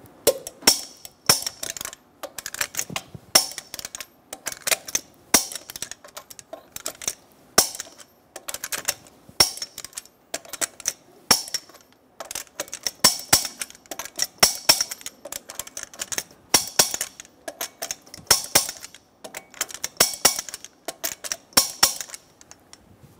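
Torque wrench ratcheting on steel lug nuts: clusters of sharp clicks with short pauses between them, as the nuts are tightened in a star pattern to 140 ft-lb.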